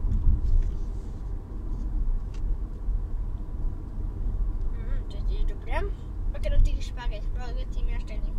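Steady low rumble of a car, heard from inside the cabin. A girl's voice makes short sounds in the last few seconds.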